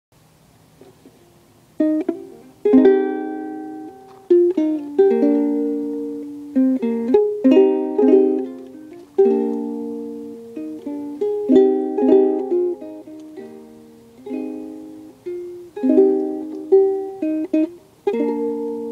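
Ukulele strumming chords, starting about two seconds in, each strum ringing out and fading before the next.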